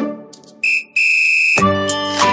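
A high, steady whistle sounding twice, a short blast then a longer one, between two stretches of dance music; the music fades before it and starts again with a beat just after.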